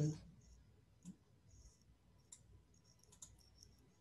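Faint, scattered clicking from a computer being operated: a handful of short clicks a second or so apart, with a quick cluster near the end.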